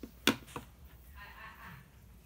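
A sharp tap on a hard surface, then a fainter second tap a quarter-second later, as a hand knocks against the desk or the equipment on it.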